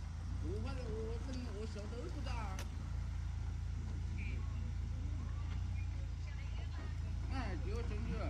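Tank 300 off-road SUV's engine running with a low, steady rumble as the vehicle crawls slowly through a muddy, rutted climb.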